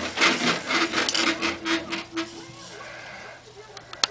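Doorway baby jumper creaking and knocking as the baby bounces in it: a quick, irregular run of creaks for about two seconds that then dies down.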